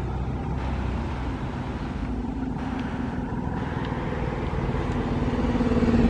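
City bus engine running at low speed with a steady rumble and hum, growing louder toward the end as the bus comes close.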